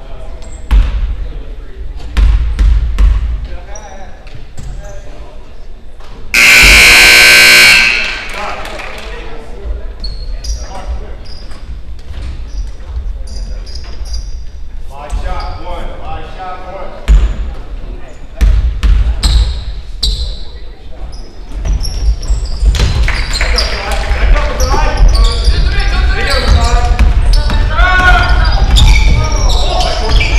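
A gym scoreboard horn sounds once, loud and steady for about a second and a half, amid a basketball bouncing on the hardwood floor and echoing voices in the gym. Crowd noise and shouting grow louder over the last several seconds as players run the court.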